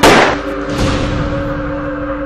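A single pistol shot: one sharp bang right at the start, with a softer noisy tail about three-quarters of a second later, over steady dramatic background music.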